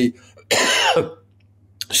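A man's short, breathy, non-word vocal burst about half a second in, lasting about half a second and falling in pitch as it goes, somewhere between a laugh and a cough.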